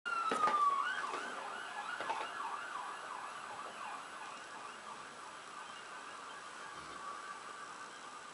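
Fire truck siren playing through a TV, yelping quickly up and down about three times a second, then settling into a steadier wail that slowly fades. A couple of sharp clicks sound in the first two seconds.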